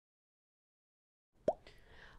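Silence, then about one and a half seconds in a single short mouth click from the presenter as she parts her lips to speak, followed by faint room tone.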